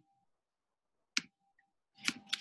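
A single sharp computer click about a second in, of the kind made when advancing or selecting on a presentation.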